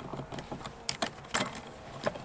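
Electrical wires and plastic wire nuts being pushed back into an electrical box, making a few light, scattered clicks and rattles.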